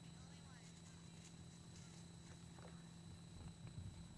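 Near silence: a steady faint hum from the recording itself, with a few faint scattered ticks and rustles.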